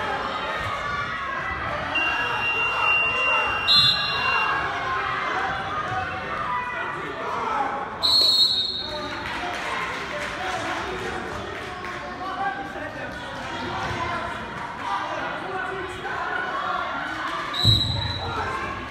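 Chatter and calls of many people echoing in a large gymnasium. A steady high tone sounds briefly about two seconds in, and a short sharp burst with a high tone comes about eight seconds in.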